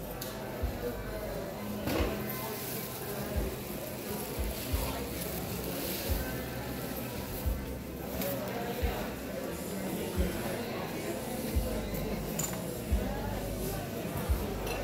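Indistinct chatter of shoppers with background music in a large indoor market hall. Soft low thumps come about every second and a half.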